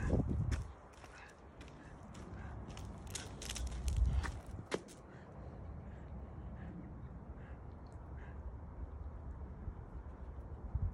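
Outdoor walking sounds: footsteps on an asphalt path, with a few short sharp clicks and a low rumble of phone handling or wind. The rumble is strongest at the start and again about four seconds in.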